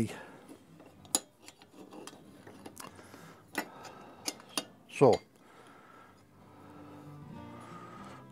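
A few light, sharp metallic clicks and taps at uneven intervals as a thin sheet-steel alternator guard is handled and shifted against the alternator's fan and casing. Faint background music runs under it in the second half.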